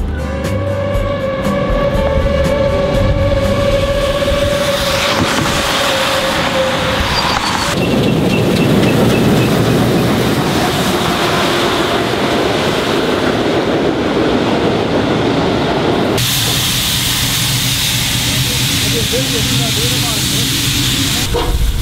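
Steam locomotive 41 096 (German class 41): a long steady whistle blast of about seven seconds, then a rough rushing noise as it runs. From about sixteen seconds in there is a loud steady hiss of steam escaping.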